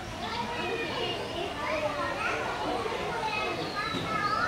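Many children's voices chattering and calling over one another in a continuous babble, with some high, shrill calls among them.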